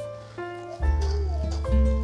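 Background music: held notes that change in steps over a deep bass line, with a short gliding melody.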